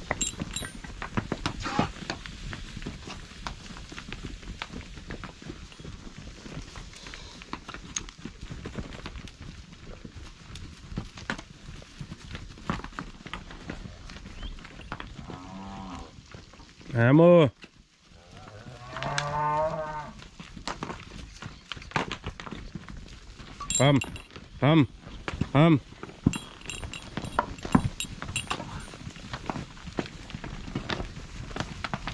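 Cattle mooing in a wooden corral: one loud moo a little past halfway and a second, wavering moo right after it, then three short sharp calls in quick succession a few seconds later. Hooves shuffle and step on dry dirt throughout.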